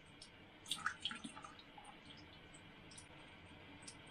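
Faint drips and small splashes of water in a small glass sample vial, a short cluster about a second in.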